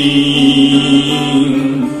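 A man singing unaccompanied through a microphone and PA, holding one long, steady note at the end of a sung line.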